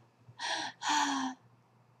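A woman's two audible breaths, a short one then a longer, sighing one with a slight voice in it.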